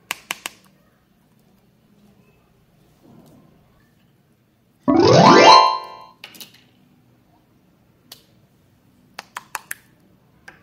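A loud rising, whistle-like cartoon sound effect lasting about a second, midway through. A few sharp clicks come at the start as the plastic slime container is opened, and a quick run of sharp clicks near the end.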